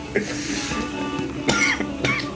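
A man coughs over a song playing in the background; the loudest cough comes about a second and a half in.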